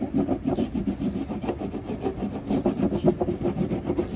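Surf wax being rubbed onto a surfboard deck in quick back-and-forth strokes: an even, rhythmic rubbing of about five strokes a second.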